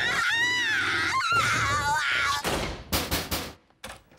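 A high, wavering scream lasting about two seconds, then a quick run of knocks on a door about three seconds in.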